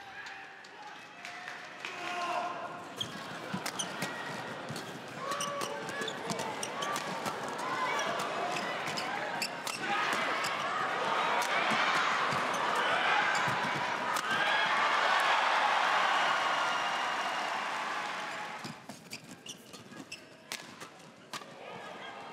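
Live court sound of a badminton doubles match in a large hall: rackets striking the shuttlecock, shoes squeaking and stamping on the court floor, and players' voices. A broad swell of noise comes in the middle, and quick racket hits come near the end.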